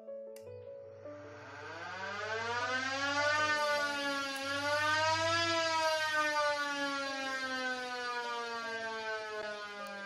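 School siren set off by the automatic bell controller to signal the lunch break: after a click about half a second in, its wail rises in pitch for about five seconds, then slowly falls again.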